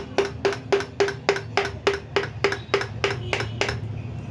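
Rapid, even hand-hammer blows on a steel punch held against the metal housing of a Saw Master SWM-195 demolition hammer during disassembly, about three and a half a second. Each blow gives a short metallic ring, and the blows stop just before the end.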